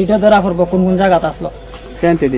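A man speaking, his voice breaking off about a second and a half in, over a steady faint hiss.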